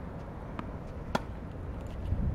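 Two sharp pops of a tennis ball being struck or bouncing on a hard court, the second, louder one about half a second after the first, over a steady low rumble.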